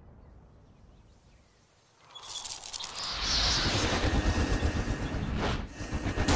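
Sound-effect rumble of rubble and stone shifting: a heavy low rumble with crackling, crumbling debris that builds from about two seconds in and is loud from about three seconds, with a brief dip near the end.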